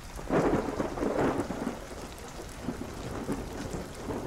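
Rain ambience playing steadily, with a rumble of thunder that swells about a third of a second in and fades over the next second.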